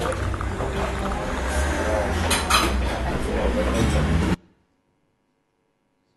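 Tea-house soundscape recording played back: people chatting over clinking china and dishes. It cuts off suddenly about four seconds in.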